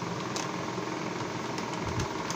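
Steady mechanical background hum, with a faint click about a third of a second in and a few more near the end as a fingertip picks at the foil seal on a plastic powder jar.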